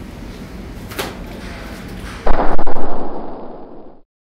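A sudden loud slam a little past two seconds in that rings on and fades over about a second and a half, over low steady room noise with a small click about a second in.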